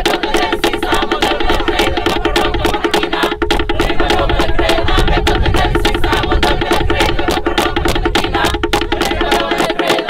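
Fijian wooden percussion, lali slit drums, beating a fast, even rhythm of strikes on one pitch, about seven a second, to drive a meke war dance.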